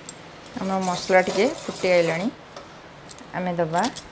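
A woman speaking in two short stretches over faint background noise, with a few light clicks between them.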